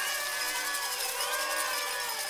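A celebration sound effect: a dense hiss with many overlapping whistle-like tones, some gliding up and down, at a steady level.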